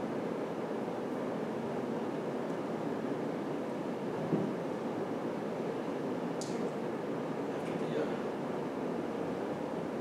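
Steady room noise with no music or speech yet, with a small tick about four seconds in and a brief faint hiss about six and a half seconds in.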